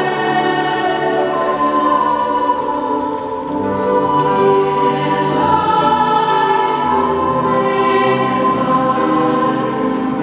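Children's treble choir and women's voices singing sustained notes in parts, with grand piano accompaniment. The sound dips briefly about three and a half seconds in, then the next phrase begins.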